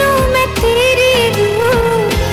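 Bollywood film song: a wavering, gliding melody line over a regular low drum beat, with no lyrics sung here.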